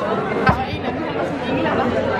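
Chatter of many voices in a large hall, with one sharp knock about half a second in as a plastic jug of beer is set down on a table.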